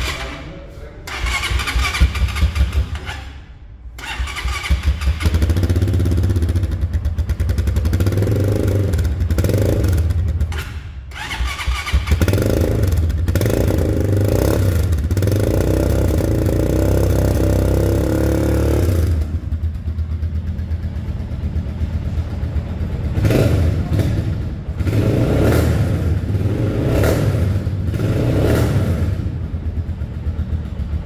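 A brand-new, zero-kilometre Vento Falkon 220 motorcycle's single-cylinder engine starting up and running. It is revved again and again, each blip rising and falling and then settling back toward idle.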